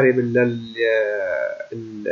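A man speaking Arabic, holding one long drawn-out syllable near the middle.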